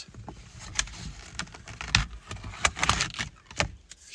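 A bundle of cardboard Little Trees air fresheners on a car's rearview mirror rustling and clicking against each other as one more is pushed onto the crowded mirror, with scattered sharp clicks and a few dull bumps from handling.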